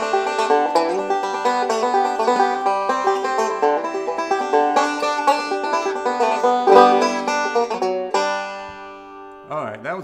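Five-string resonator banjo picked fast in bluegrass style, a D7 lick worked into a quick tune; the playing is a bit of a mess. The picking stops about eight seconds in and a last chord rings and fades.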